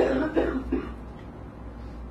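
A person coughing close to the microphone: three quick coughs in the first second, then they stop.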